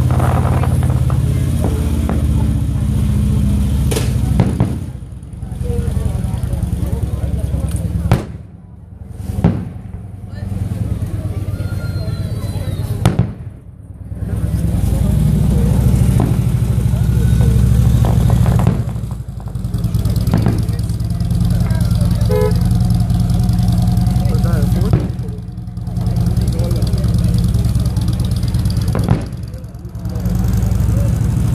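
Aerial firework shells bursting: a heavy low rumble with repeated sharp bangs that briefly choke the phone's microphone several times, and crowd voices under it.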